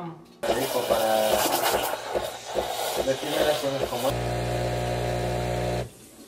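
Espresso machine's steam wand hissing and squealing as milk is steamed in a metal pitcher. About four seconds in, this gives way to a steady machine hum that cuts off shortly before the end.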